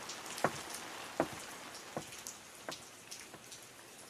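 Light rain falling steadily, with single drops splashing every second or so. Faint.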